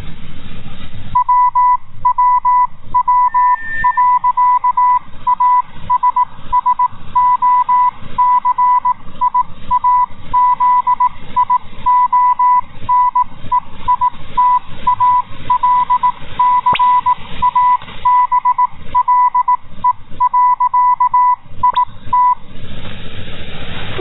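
Morse code station identification from the Italcable shortwave time signal station: a single tone of about 1 kHz keyed in dots and dashes, received in USB over a background of radio static. The keying starts about a second in and stops shortly before the end.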